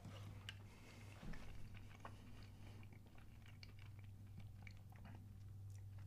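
Faint chewing and small wet mouth clicks from someone eating a mouthful of chili, over a low steady hum.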